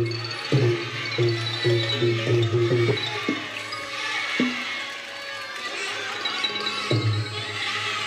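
Thai traditional percussion-led music: a quick run of pitched drum strikes over the first three seconds, then a few single strikes spaced a second or more apart.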